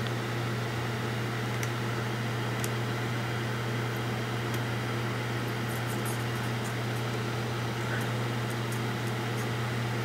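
Steady low hum with a hiss over it, and a few faint light ticks scattered through.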